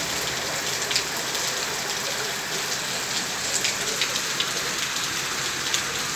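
Heavy rain falling on a paved concrete yard: a steady hiss of rain with scattered sharp ticks of individual drops striking the ground.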